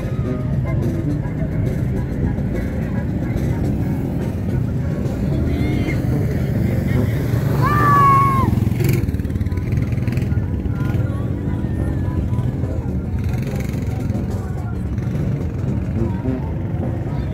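ATV (quad bike) engine running steadily, getting louder about halfway through as the quad passes close, when a brief high shout rings out over it.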